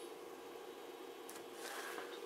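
Quiet bench room tone: a faint steady hum, with a soft brief rustle near the end.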